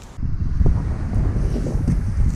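Wind buffeting the microphone: a loud, uneven low rumble that jumps up suddenly just after the start.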